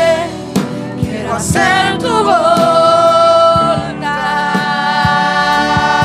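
Live gospel worship music: several voices singing long held notes together over keyboard and electric guitar, with regular percussive hits keeping the beat.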